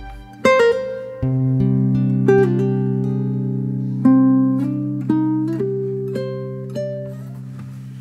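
Guitar playing a slow, melancholy melody of single plucked notes, one every half-second to second, over a low note that starts about a second in and is held.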